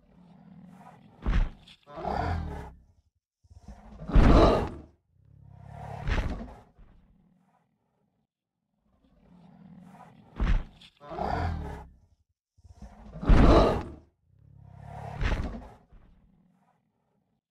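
Dinosaur roar sound effect of Google's 3D augmented-reality Parasaurolophus: a group of four calls, the third loudest, then a pause, and the same group repeated about nine seconds later as the sound loops.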